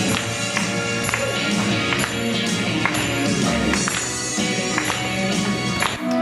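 Instrumental band music with a steady percussion beat and no singing.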